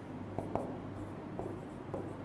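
Felt-tip marker writing on a whiteboard: a few short squeaking, scratching strokes, over a low steady hum.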